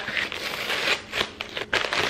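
Yellow padded paper mailer crinkling and rustling as it is opened by hand and a paperback book is slid out, in a run of short rustles with sharper crackles about a second in and near the end.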